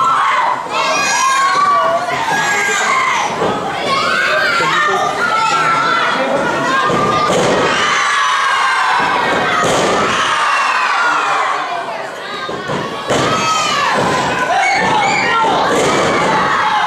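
A small crowd of children shouting and cheering at ringside, with several thuds from wrestlers hitting the ring mat.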